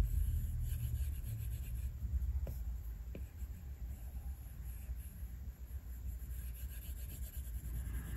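Stylus tip rubbing lightly across a tablet's glass screen in short painting strokes, faint over a steady low room rumble, with a couple of soft ticks a few seconds in.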